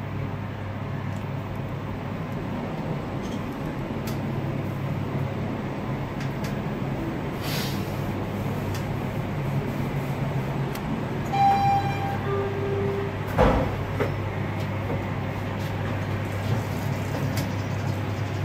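Guangri machine-room-less elevator car riding up with a steady low hum. About two-thirds of the way through, a two-note arrival chime sounds, a higher note then a lower one. A knock follows as the car stops, then the doors slide open.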